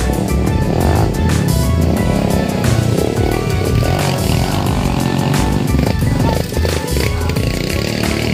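Background music with a beat, over a dirt bike's engine running as the bike comes along the trail.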